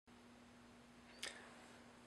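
A single short, sharp click about a second in, against near silence with a faint steady hum.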